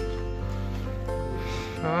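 Background music with long held notes over a steady low bass.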